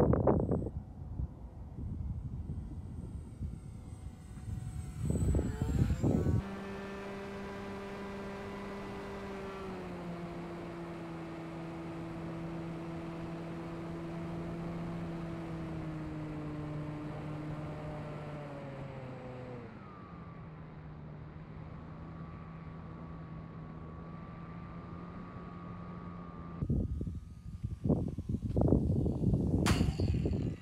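Electric RC plane's 2212 1400KV brushless motor and 8x6 propeller heard from a camera mounted on the plane: a steady whine that drops in pitch twice, about ten seconds in and again around twenty seconds in. Before it and near the end, gusty wind buffeting on the microphone.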